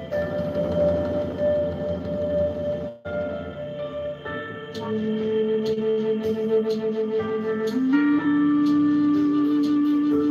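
A soft ambient music bed with a held note plays and breaks off about three seconds in. A double-barreled Spanish cedar flute then comes in, sounding two notes at once: a low held drone and a higher melody note. The lower note steps up in pitch near the end.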